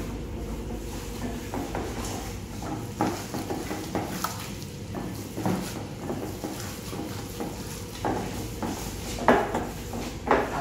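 Gloved hands kneading seasoned minced meat in a bowl: soft, irregular squelches and knocks against the bowl, with a louder knock near the end.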